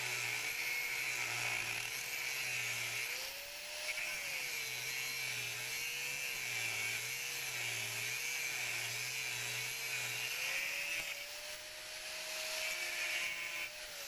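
Angle grinder's disc grinding down a welded metal flange on a tank lid. The motor whine dips and wavers in pitch as the disc is pressed into the metal, then rises a little near the end as the load eases.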